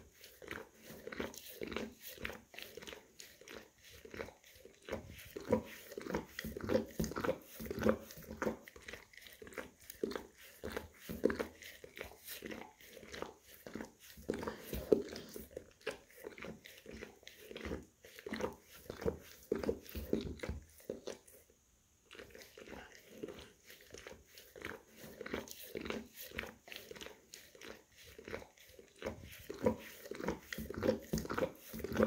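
English cream golden retriever licking and grooming his paw up close: a fast, continuous run of wet licking and nibbling sounds, with a brief pause about two-thirds of the way through.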